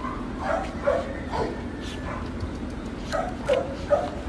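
Dog giving short, pitched play barks while two dogs wrestle: three in the first second and a half, then three more near the end.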